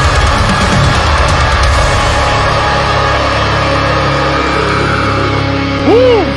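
Heavy metal song playing, dense and loud with distorted guitars and drums. Near the end a short swooping tone rises and falls in pitch: an edit sound effect.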